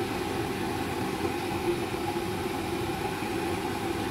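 A steady mechanical hum over an even hiss, with no change in level.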